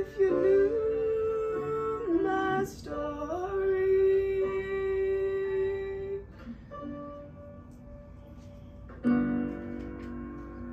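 A young woman singing the closing phrase of a musical-theatre song over an instrumental accompaniment, ending on a long held note. The accompaniment then plays on alone, with a final chord struck about nine seconds in.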